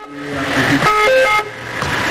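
An emergency vehicle's electronic siren or horn sounds a repeating pattern of steady tones that jump up and down in pitch, over a hiss of street noise.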